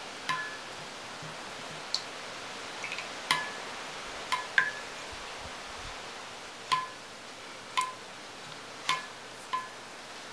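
A paintbrush being rinsed in a glass water jar, the brush knocking against the glass about nine times at an uneven pace, each light tap ringing briefly.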